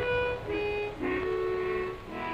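Background music: a slow melody of held notes, changing pitch about every half second.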